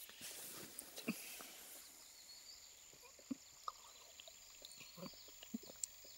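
Quiet ambience: a faint steady high hiss with a handful of soft, short knocks and clicks scattered through it.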